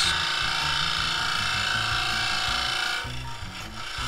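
Bowl gouge cutting the outside of a spinning river sheoak bowl blank on a wood lathe, a steady scraping hiss as long shavings peel off the very hard wood. The cut eases and goes a little quieter about three seconds in.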